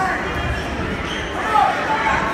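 Spectators and coaches shouting at a wrestling bout in a large, echoing gym, the loudest yell about one and a half seconds in, with a few low thuds underneath.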